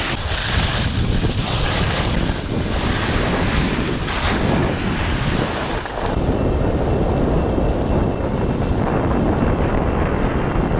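Wind rushing over a GoPro camera's microphone as the skier carrying it moves down the slope, a loud, steady rumble with hiss that thins out about six seconds in.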